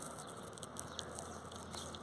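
Faint outdoor background noise with a few soft, scattered clicks and rustles.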